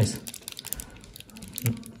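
Quick, irregular light clicks and crinkles of a clear plastic sleeve holding a NATO watch strap as it is handled and turned in the hand.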